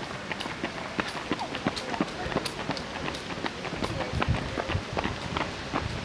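Running footsteps: the shoes of several runners slapping on an asphalt road as they pass close by, in an uneven patter of quick steps, with voices in the background.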